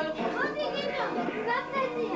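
Several people's voices talking and calling out at once, some of them high-pitched.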